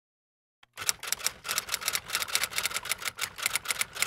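Typewriter sound effect: quick, even key clacks, about five a second, starting just under a second in and keeping on, accompanying the type-on credit text.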